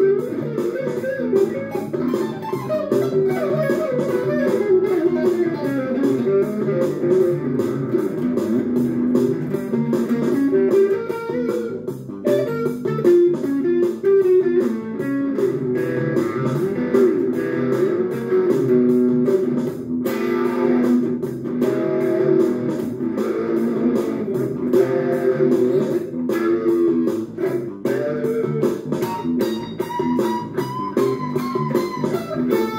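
Electric guitar played without a break: a steady stream of picked single notes and chords.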